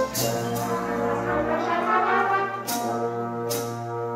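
School jazz band playing live, brass to the fore with sustained chords over a held low note. From near the middle on, short hissy percussion accents come about every 0.8 seconds.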